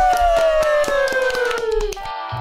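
Two people clapping their hands rapidly, about eight to ten claps a second, over a long pitched tone that slides steadily down.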